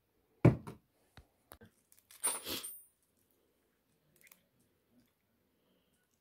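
A knock as a glass bottle is set down on a stone countertop, then a few light clicks and, a little over two seconds in, a brief tearing crackle from handling, with faint clicks after.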